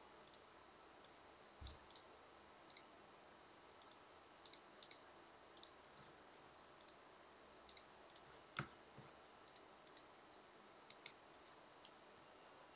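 Irregular, faint clicks of a computer keyboard and mouse, about twenty of them, with one sharper click about two thirds of the way through.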